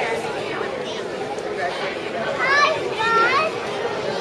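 Babble of many young children chattering and calling out at once, with two high-pitched child calls standing out about two and a half and three seconds in.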